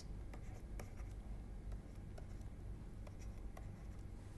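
Faint, irregular taps and scratches of a stylus writing on a pen tablet, over a low steady hum.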